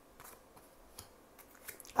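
Baralho cigano (Lenormand) cards being dealt onto a cloth-covered table: a few faint, short snaps and taps as cards leave the deck and land, the clearest about halfway through.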